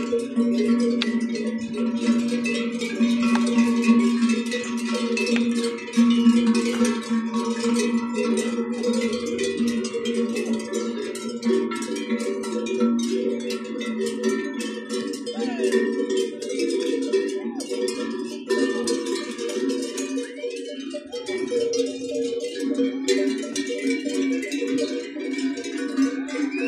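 Many cattle bells clanking together in a continuous, uneven jangle, rung by a herd of cattle on the move.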